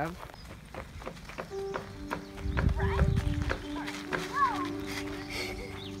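Background music with long held notes comes in about a second and a half in, over outdoor noise with a low rumble around the middle and a short high voice sound near the end.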